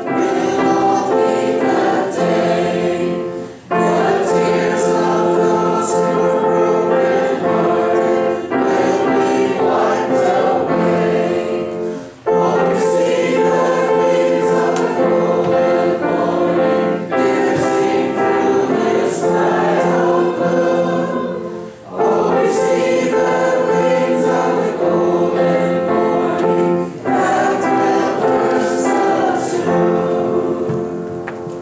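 Congregation singing a hymn together with piano accompaniment, the singing breaking briefly three times between lines.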